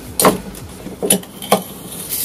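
Kitchen knife blade cutting into a clear ice cube on a wooden cutting board: about three short, sharp cracking knocks as the blade bites the ice and hits the board.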